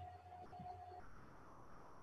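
Near silence: faint room tone with a thin steady tone that stops about halfway through.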